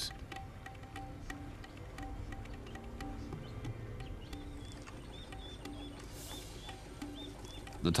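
Soft documentary background music of held low notes, with short high notes repeating about twice a second in the second half.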